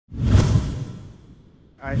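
A whoosh sound effect with a deep low rumble, swelling in the first half-second and fading away over about a second and a half, as a video intro transition. A man's voice starts just before the end.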